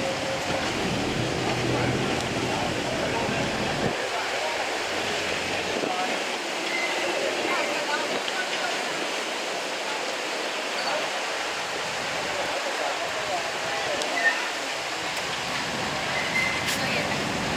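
Riverboat deck ambience: indistinct passenger chatter over a steady rush of river water, with a low boat-engine rumble that drops away about four seconds in.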